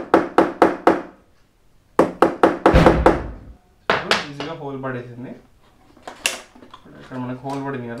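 A quick run of hammer taps, about five a second, then a second run of taps ending in a heavier thump, during assembly of an IKEA Lack table.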